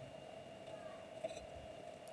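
Quiet room tone with a faint steady hum, and a few faint clicks a little past halfway from scissors cutting into a thin plastic lid.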